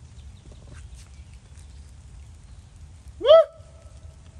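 A single short, loud animal call about three seconds in, rising in pitch, over faint outdoor background.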